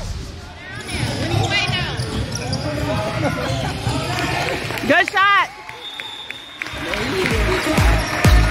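Basketball game on a hardwood court: a ball bouncing, sneakers squeaking on the floor, loudest about five seconds in, and the voices of players and onlookers echoing in the gym.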